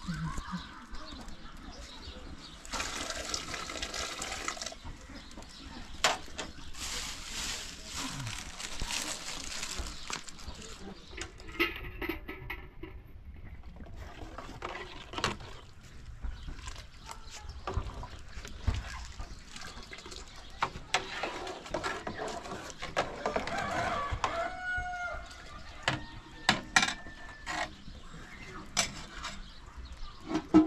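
Outdoor cooking sounds over a wood fire: a plastic bag rustling and beans being handled, then a ladle stirring a pot of boiling water, with scattered clicks and knocks. A hen clucks a few times late on.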